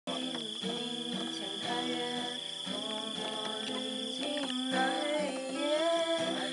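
A woman singing a song and accompanying herself by strumming chords on an acoustic guitar.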